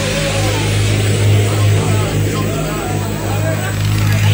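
Loud hard-dance electronic music (tekstyle/jumpstyle) from a live DJ set: a heavy, steady bass under a dense noisy wash, with faint wavering higher sounds over it.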